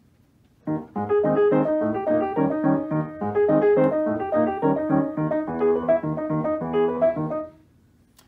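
A Hallet, Davis grand piano playing itself under a PianoDisc player system: an old-time tune in the style of early-1900s player pianos, with a steady beat of bass notes and chords. It starts about a second in and stops shortly before the end.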